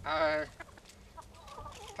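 Domestic chickens clucking as they crowd in to be hand-fed; one loud call of about half a second at the start, then quieter scattered clucks.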